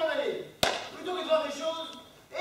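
Voices talking, cut across about half a second in by a single sharp knock, the loudest sound here.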